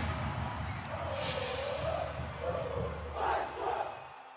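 Closing jingle of a channel logo sting fading out: a low music bed dying away, with crowd-like shouted voices over it that swell twice near the end.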